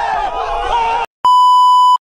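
A crowd of young men shouting and hollering for about a second, cut off abruptly. After a brief gap a loud, steady electronic test-tone beep sounds.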